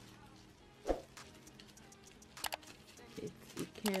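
Hands handling a sealed plastic bag: a soft thump about a second in, then a few sharp crinkles around halfway and some small rustles, otherwise quiet.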